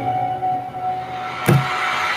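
Background music with long held tones, and a sharp click about one and a half seconds in.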